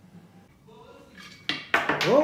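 Small hard objects clattering against an old clay vase as they are pulled out of it: quiet at first, then two sharp clattering knocks in the last half second.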